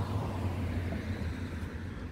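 A motor vehicle's engine running nearby, a steady low hum that eases slightly near the end.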